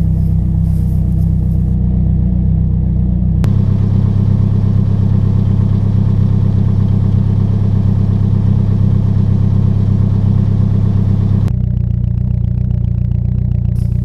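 1994 Toyota Celica GT-Four ST205's turbocharged 2.0-litre four-cylinder idling steadily, freshly started from cold after a year of standing with a flat battery. The idle's tone changes abruptly twice, about three and a half seconds in and again near eleven and a half seconds.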